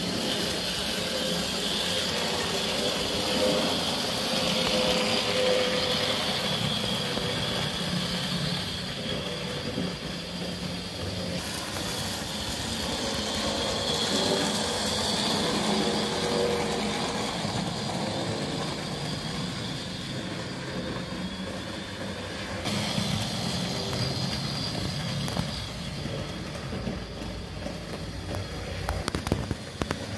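HO-scale model trains running on a layout: the steady whirr of small electric motors and wheels rolling on the track, with a few sharp clicks near the end.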